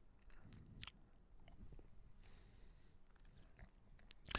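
Near silence: room tone, with two faint short clicks about half a second and just under a second in.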